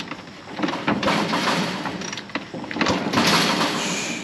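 KTM 300 two-stroke dirt bike being kick-started: two kicks, each a rush of noise as the kickstarter turns the engine over against a lot of compression. The engine does not fire.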